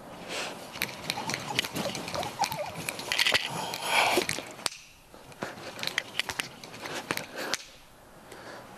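Nunchucks swung through a continuous demonstration: a run of sharp clicks and clacks from the sticks and their link, with a rushing swish of air about three to four seconds in.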